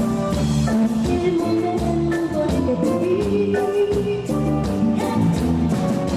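Live Tejano band music: a woman singing lead over keyboards and a steady drum beat.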